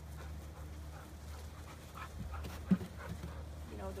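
A dog panting, with one short, loud thump about two and three-quarter seconds in.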